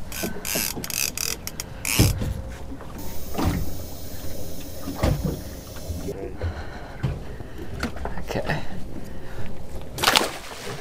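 Scattered knocks and bumps of a large redfish being handled on a boat's fibreglass deck, over a steady low rumble. A high hiss sets in about three seconds in and stops abruptly about three seconds later.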